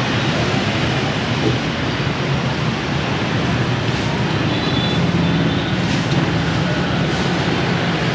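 Steady street traffic noise from passing motorbikes, with a lower hum joining about five seconds in.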